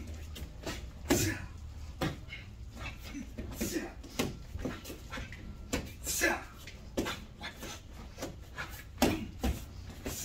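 Irregular sharp clacks and swishes from a pair of wooden fighting sticks swung and struck during a karate form, with short forceful exhalations between the strikes.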